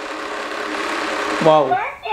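Small electric motor of a toy ATM money bank running steadily as its rollers draw a banknote in, stopping near the end.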